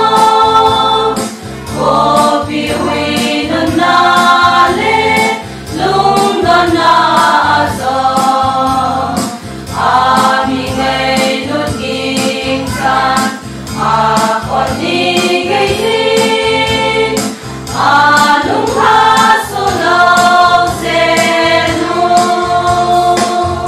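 Women's choir singing a hymn together, over an accompaniment with a steady beat.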